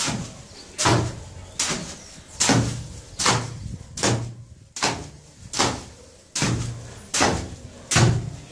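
A steel hoe is dragged and chopped through a heap of semi-dry sand-and-cement subfloor mortar, scraping against the concrete floor beneath. The strokes come regularly, about one every 0.8 s, each a sharp scrape that quickly fades.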